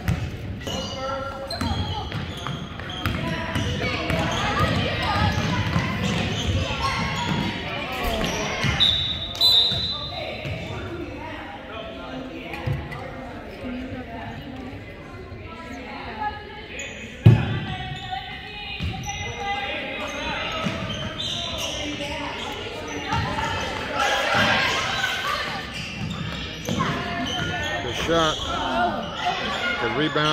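Basketball bouncing on a gym's hardwood court during a youth game, under spectators' talk echoing in the large hall, with a single loud thump about seventeen seconds in.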